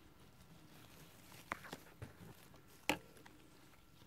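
Quiet room with a few faint, short clicks and taps, the sharpest about three seconds in.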